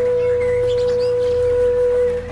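Calm ambient music: a flute holding one long steady note over a low sustained drone, with a few faint bird chirps mixed in during the first second.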